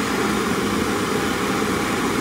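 Two gas torches burning steadily on brass cartridge cases in a case annealer, a continuous even rushing noise of the flames.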